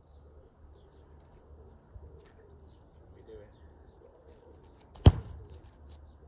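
A single sharp thud of a football being kicked, about five seconds in, over faint birdsong in the background.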